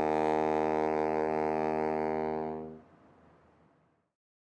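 Closing theme music, a brass and saxophone band holding its final chord. The chord stops about three seconds in, leaving a short fading tail.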